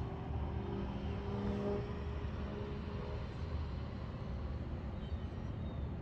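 Steady low rumble of road traffic, with a faint engine hum in the first few seconds.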